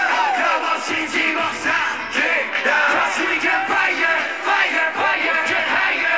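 Live hip-hop song played loud over a stage sound system, with a crowd of fans yelling and screaming over it.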